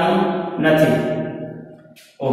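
A man's voice speaking in a drawn-out, sing-song way, trailing off in the second half.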